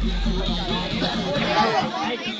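Voices talking and chattering, with a low hum that sinks in pitch and fades out within the first second.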